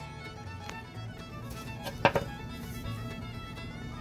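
Background music with fiddle, at a steady low level. About two seconds in comes a single sharp knock, a silver quarter being flipped over and set down on a paper towel.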